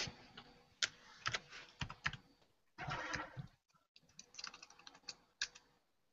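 Typing on a computer keyboard: irregular keystrokes in short runs, with a brief rustling noise about three seconds in.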